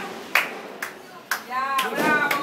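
Hand claps in an even rhythm, about two a second, with voices rising into drawn-out exclamations near the end.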